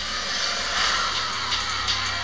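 Film trailer soundtrack: a steady low drone under a swelling hiss-like whoosh, with a few faint ticks near the end.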